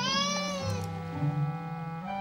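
A single short mewling cry, rising then falling in pitch, lasting under a second at the start, over background music.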